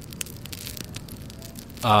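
Campfire crackling: quiet, scattered pops and clicks over a low background hiss.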